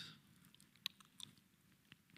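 Near silence: a pause in a talk, with a few faint, brief clicks about a second in.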